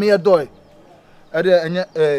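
A man's voice speaking in two short phrases, with a pause of about a second between them.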